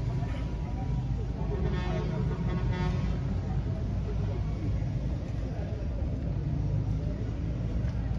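Steady low rumble of a road vehicle on the move, with a brief higher-pitched tone lasting about a second and a half, starting nearly two seconds in.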